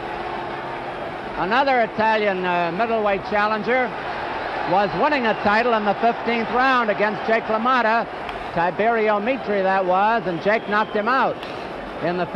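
The original American television commentary on the fight: a man talking steadily, fainter than a voiceover would be, over a steady murmur of the arena crowd.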